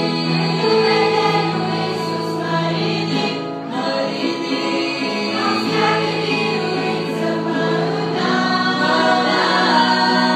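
Girls' choir singing a Christian song in harmony, long held notes with the chord changing every second or two.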